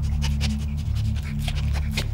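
Dog panting in quick breaths, about five a second, over a steady low music drone.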